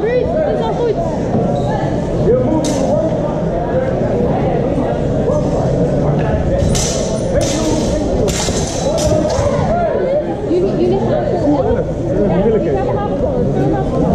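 Murmur of voices echoing in a large sports hall, with a quick string of sharp clashes between about seven and nine and a half seconds: longswords striking each other during a fencing exchange.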